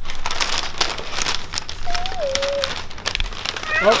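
Crinkling and rustling of shiny foil gift wrap being handled, as irregular crackles, with one short high note sliding downward about two seconds in.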